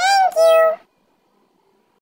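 A very high-pitched, squeaky cartoon-style voice saying two quick syllables, heard as 'thank you', lasting under a second, then silence.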